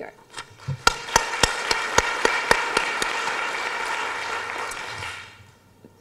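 Applause, with a few sharp single claps standing out in the first two seconds; it fades out about five seconds in.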